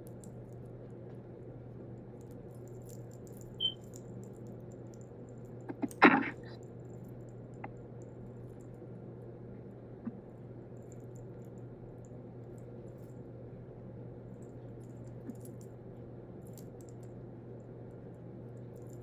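A steady low hum with a few faint clicks, and one louder sharp knock about six seconds in.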